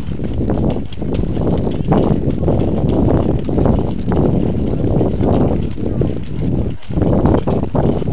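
Several horses walking on a gravel trail, hooves clip-clopping, under heavy low noise on the microphone.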